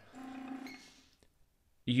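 Game Ready cold-compression unit switching back on after a reset: a brief steady low tone lasting about half a second, then a moment of near silence.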